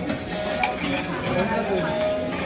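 Metal serving spoon scraping and clinking against a stainless-steel chafing dish as food is scooped out, with several light clinks over background voices.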